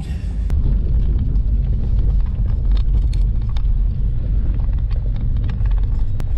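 A vehicle driving slowly up a gravel mountain track, heard from inside the cabin: a steady low rumble of engine and tyres, with small scattered clicks of stones under the tyres.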